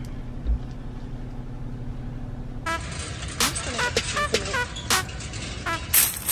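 A steady low hum inside a car for about two and a half seconds. Then background music with short, horn-like notes cuts in.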